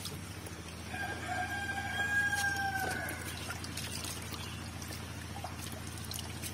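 A rooster crows once, one long call lasting about two and a half seconds, over the splashing of catfish crowded in a harvest net.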